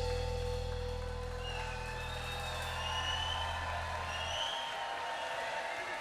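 Live band holding a sustained closing chord at the end of a song: the low bass notes stop a little over four seconds in while higher keyboard tones hang on, and the crowd begins to cheer.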